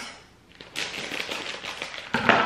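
Scissors cutting open a plastic candy bag: a rapid run of small crisp snips and crackles of the film, starting about three-quarters of a second in.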